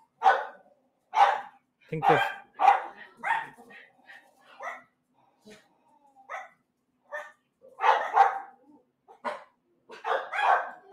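Several household dogs barking in short, irregular bursts, some barks coming in quick pairs, with a short lull near the middle. They are alarm barking at a food delivery being dropped off.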